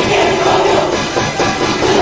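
A large school cheering section chanting loudly in unison, many voices together as one dense, continuous sound with the general noise of a packed crowd.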